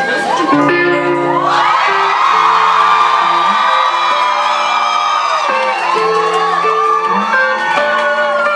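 Guitar playing the slow opening notes of a song live, with held notes ringing. A crowd is whooping and cheering over it.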